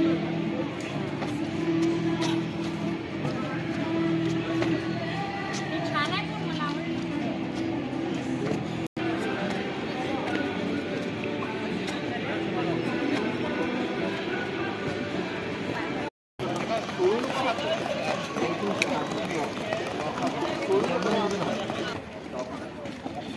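Voices of several people talking and calling outdoors, heard in three pieces cut together, with two short drops to silence about nine and sixteen seconds in.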